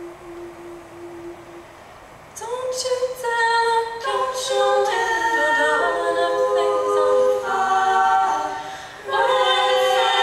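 Women's a cappella group singing. A single held low note fades out, and after a short gap the full group comes in about two seconds in with close-voiced chords, breaking off briefly just before the end and coming straight back in.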